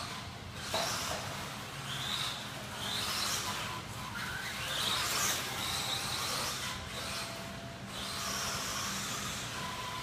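Electric motor of a 1/10-scale Associated RC10 two-wheel-drive buggy whining as it is driven around a dirt track, the pitch rising and falling over and over with the throttle through the corners and straights.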